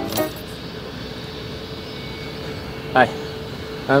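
Steady low hum of a car's interior with a faint constant tone, as a music cue cuts off at the start; a brief voice sounds about three seconds in.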